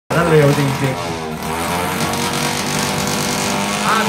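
A drag-race motorcycle's engine running at a steady, held pitch for a couple of seconds, after a short burst of speech.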